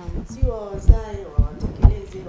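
A woman's voice with three dull, low thumps in under a second and a half, the last the loudest, of the kind a gesturing hand makes knocking against a desk or microphone.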